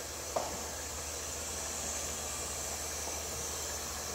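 Steady high hiss of compressed air in the denester's pneumatic supply, over a low steady hum, with one short sharp click about a third of a second in.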